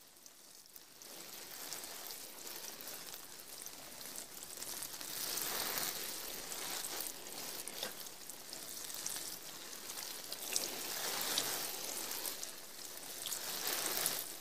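Rain falling: a steady hiss with scattered drop clicks, fading in over the first few seconds.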